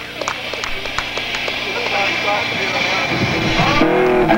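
A crowd cheering and whistling as a metal band's electric guitars start up. The noise swells, and sustained electric guitar chords come in about three seconds in.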